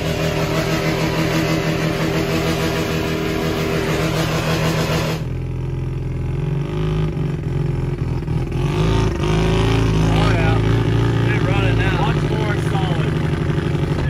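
Van engine running steadily at a raised idle. After a sudden cut about five seconds in, it is heard from inside the cab as the van drives off, the engine sound lower and fuller.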